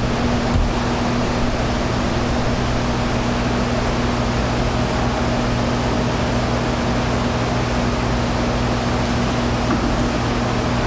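Steady, even hiss with a low electrical hum underneath, the recording's own noise floor showing in a gap with no speech. There is a small low thump about half a second in.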